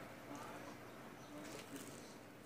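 Quiet room tone with a few faint, indistinct small noises.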